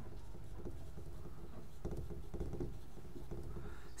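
Marker pen writing on a whiteboard: faint squeaks and small taps of the pen strokes over a low, steady room hum.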